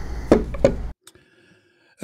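Two knocks about a third of a second apart as a pressure-washer gun and wand are set down on a cloth-covered table, over a steady low room hum. The sound cuts off abruptly just before halfway through.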